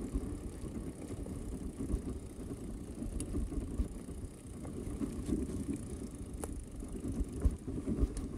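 Mountain bike rolling along a dirt trail: an uneven rumble of the tyres on the packed dirt and the bike shaking over the bumps, with a couple of sharp clicks, one about three seconds in and one about six and a half seconds in.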